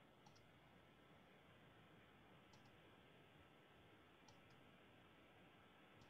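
Near silence: faint room tone with about four soft, paired computer-mouse clicks, one every second and a half to two seconds, as slides are paged forward.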